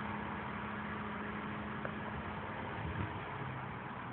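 A motor or engine running steadily with a hissing background. Its hum drops in pitch near the end, and there is a light knock about three seconds in.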